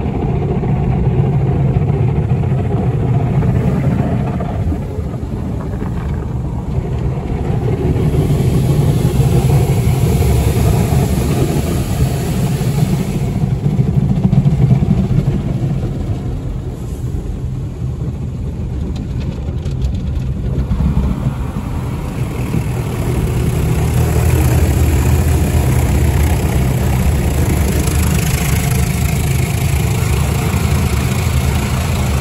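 Automatic car wash brushes and water spray going over the car, heard muffled from inside the cabin, swelling and fading in waves over a low rumble, with the Corvette's V8 idling underneath.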